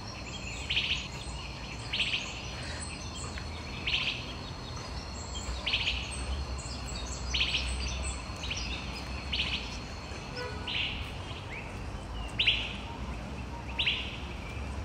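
A bird calling again and again, a short high chirp every second or two, about ten times, over a low steady background.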